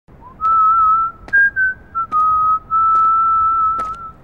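A person whistling a slow tune: a clear single tone in mostly long held notes, with a few short higher notes about a second in. A few faint clicks are heard beneath it.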